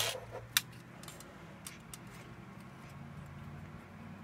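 Sharp clicks as a car stereo's sheet-metal chassis is handled, the last loud one just over half a second in, followed by a few faint ticks over a low steady hum.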